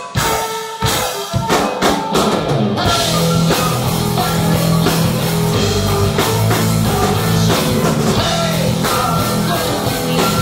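Live folk metal band with violin, electric guitar, bass guitar and drum kit. A sparse opening of separate drum hits gives way about three seconds in to the full band, with steady bass notes and cymbals.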